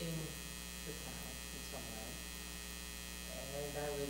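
Steady electrical mains hum on the meeting-room microphone feed, with a faint voice murmuring near the end.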